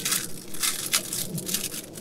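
Plastic packaging rustling and crinkling in several irregular bursts as a packet of small sunshade mounting clips is opened by hand.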